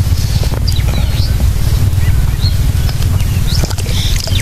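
Wind noise on the microphone, with several short bird chirps over it.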